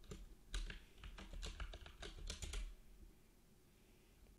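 Computer keyboard being typed on: a quick run of key clicks that stops about two and a half seconds in.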